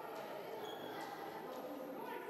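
Ambience of a fencing bout in a large sports hall: a background murmur of voices and a few short knocks and taps from the fencers' footwork and blades on the piste.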